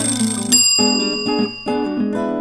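Time's-up sound effect in a quiz: a short hiss, then a single bell-like ding about half a second in that rings on and fades. Strummed acoustic guitar background music plays underneath.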